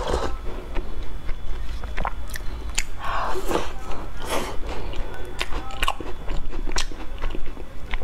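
Close-up mouth sounds of a person biting and chewing a Chinese shortbread cookie (tao su) coated in thick black sesame paste: irregular soft crunches and wet mouth clicks.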